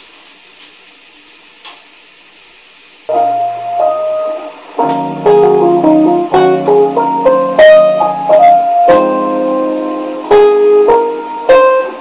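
Digital keyboard played solo with a piano sound, starting about three seconds in after a short stretch of quiet room hiss. Held chords sound under a melody of single notes.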